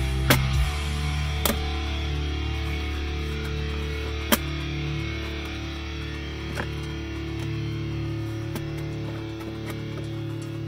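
Guitar rock music with a strong, steady bass line playing over a car stereo with an added subwoofer. A few sharp clicks, the loudest near the start and about four seconds in, come from hands handling the plastic centre console.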